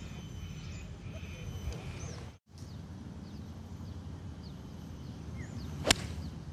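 Steady outdoor course background with faint bird chirps, then near the end a single sharp click of a golf iron striking the ball on a fairway approach shot.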